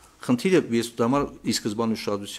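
Only speech: a man talking into a microphone, without pause.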